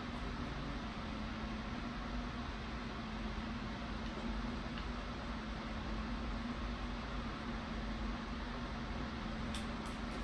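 Steady room noise: an even hiss with a constant low hum, like a fan or air unit running, and a few faint clicks near the end.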